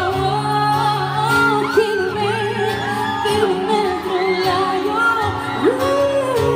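A woman singing live into a microphone, with long held notes that slide between pitches, over a strummed acoustic guitar.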